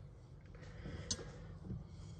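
Quiet room background with a steady low hum and a single faint click about a second in.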